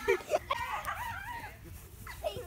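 A girl's high-pitched laughing and squealing, in short wavering calls.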